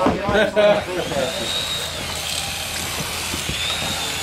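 Electric carving knife running steadily while filleting fish, its motor giving a faint high whine.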